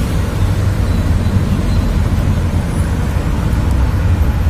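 Steady low mechanical rumble, even and unbroken, with no distinct knocks or clicks.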